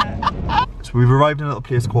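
A man laughing: a few short, high yelps, then a longer, lower burst of laughter about a second in.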